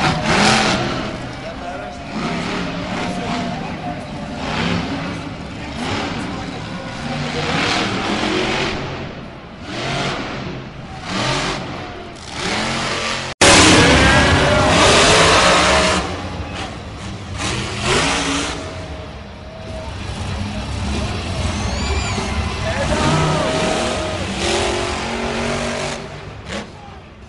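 Monster truck engines revving and running hard, with voices mixed in over the noise. About halfway through, the sound breaks off abruptly and comes back louder.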